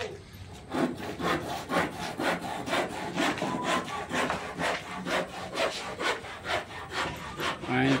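Handsaw cutting through wood in quick back-and-forth strokes, about three a second, starting about a second in.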